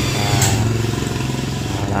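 An engine running steadily in the background as a low drone, with a short sharp click about half a second in.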